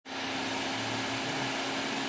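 Steady engine hum at idle with a constant low tone, unchanging throughout.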